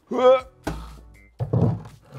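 A heavy concrete paving stone set down into the bottom of a plywood cabinet: one dull thunk about two-thirds of a second in, its low boom fading over most of a second.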